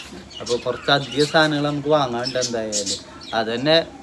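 People talking, a low-pitched voice in two stretches with a short pause between, most likely Malayalam speech that the recogniser did not write down.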